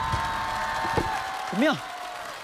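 A held note from the background music fading out, with a single thud of a basketball on the floor about a second in. A man then briefly asks '怎么样?' ('how's that?').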